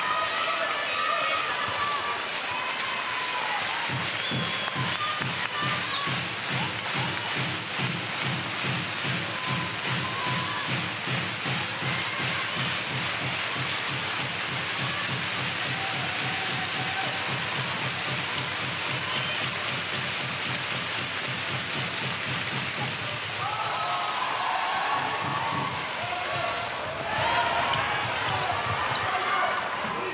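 Arena crowd clapping and beating a drum in a steady rhythm, about two beats a second, fading out after about twenty seconds. A commentator's voice is heard near the start and again near the end.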